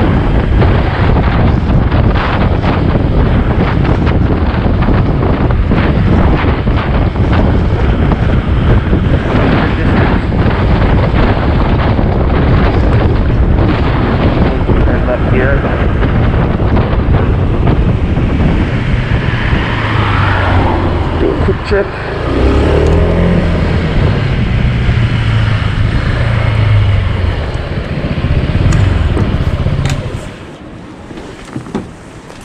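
A Honda PCX 125 scooter's single-cylinder engine and road noise while riding, largely covered by heavy wind buffeting on the microphone. The noise stays loud and steady, with some changes in the engine's pitch in the last third, and falls away sharply at the very end as the scooter slows and stops.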